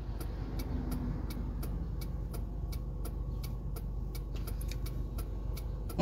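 Car turn-signal (indicator) ticking steadily inside the cabin, about two to three clicks a second, over a low steady vehicle hum.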